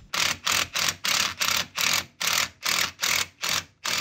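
Cordless impact wrench hammering in short trigger bursts, about three a second, on a wheel stud at the hub while trying to back out a stud conversion.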